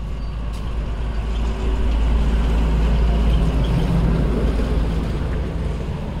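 Low engine rumble of a motor vehicle close by, growing louder over the first couple of seconds and then holding steady.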